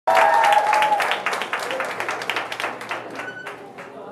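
Audience applauding, the clapping loud at first and dying away over the few seconds, with a voice calling out briefly at the start.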